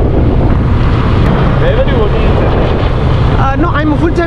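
Wind rushing over the microphone of a moving motorbike, with the bike's engine running steadily underneath. Voices break through the noise briefly near the middle and again near the end.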